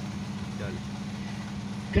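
Steady low hum, with a faint voice briefly in the background.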